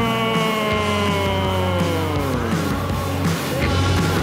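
Loud wrestling entrance music with a steady beat. Over it, the ring announcer's long drawn-out shout of "Junior!" is held, falling slowly in pitch, and fades out about two and a half seconds in.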